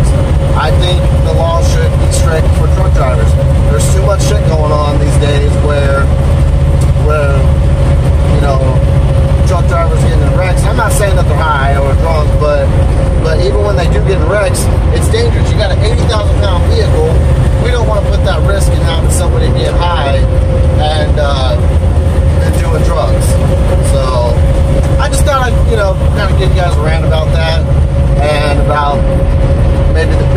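Semi truck driving at highway speed, heard inside the cab: a steady low engine and road rumble with a steady mid-pitched whine over it, and indistinct voices talking throughout.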